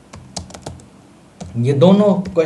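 Typing on a computer keyboard: a few quick, separate keystroke clicks in the first second. About a second and a half in, a man's voice starts and is the loudest sound.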